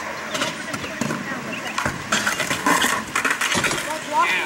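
Skateboard clattering on a concrete skatepark as the skater falls, with a burst of loud clattering about two seconds in; voices in the background.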